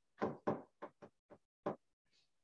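A stylus tapping on the glass of an interactive display board, about six short, uneven taps.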